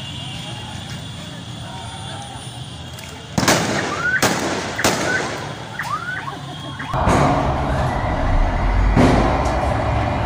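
Three loud bangs about a second apart, starting about three and a half seconds in, as tear gas smoke spreads over the road: anti-riot police firing tear gas canisters. Near seven seconds the sound cuts to a steady din of street traffic.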